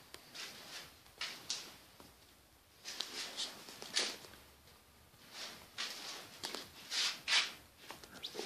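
Faint, irregular scuffs and rustles of someone walking and handling a camera in a small room.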